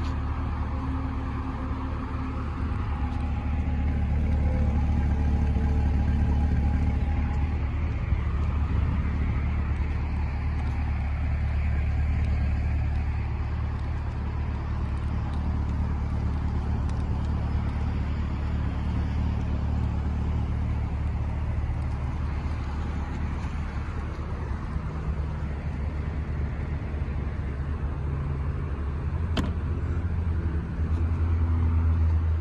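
2020 Chevrolet Corvette Stingray's 6.2-litre V8 idling steadily, a low, even hum heard from behind the car near the exhaust.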